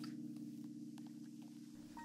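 Faint steady low hum that slowly fades, with a few faint ticks.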